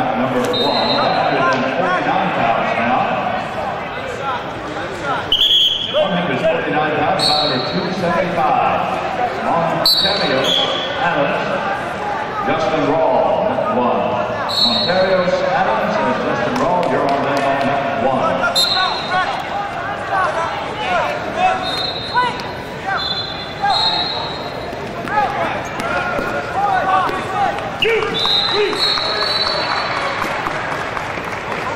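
Echoing wrestling-tournament hall full of overlapping voices talking and calling out. Short, high squeaks of wrestling shoes on the mats come every second or two, with an occasional thud.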